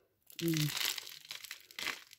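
Loose potting mix with perlite crumbling off a lifted root ball and falling into the pot below: a gritty rustle lasting about a second and a half.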